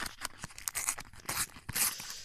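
A foil Panini sticker packet being torn open by hand: irregular crackly rips and crinkles of the foil wrapper, with two louder tearing rips in the second half.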